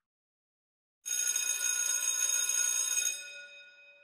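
An electric bell ringing for about two seconds, starting about a second in, then fading out.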